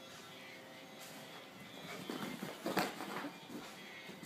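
Dogs romping on a carpeted floor: scuffling, with a few short sharp knocks about two to three seconds in, the loudest near three seconds in. Faint music runs underneath.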